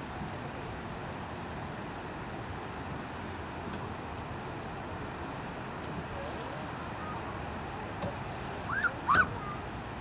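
Steady outdoor noise with faint splashes of aluminium rowboat oars dipping into lake water. Near the end come two short, loud calls that rise and fall in pitch.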